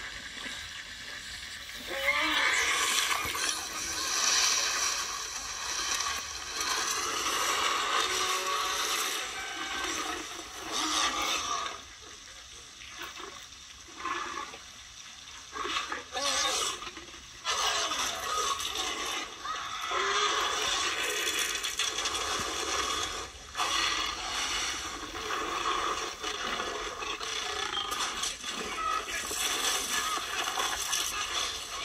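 Film soundtrack heard through laptop speakers: steady heavy rain with a Tyrannosaurus rex growling and roaring, with a quieter stretch about halfway through.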